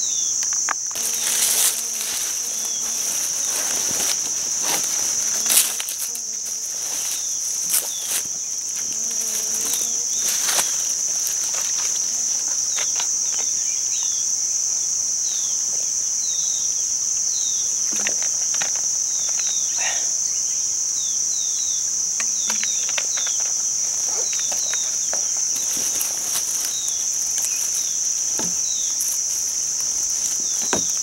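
A steady high-pitched insect drone runs unbroken throughout. Over it come scattered rustles and soft knocks of handling in dry leaves and cloth, and from the middle on a run of short, high, falling chirps.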